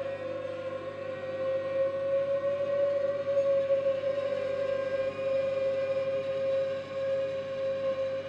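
Ondes Martenot holding one long sustained note, played with the ring on the ribbon and shaped by the intensity key. The note wavers slightly in pitch over fainter steady tones beneath it.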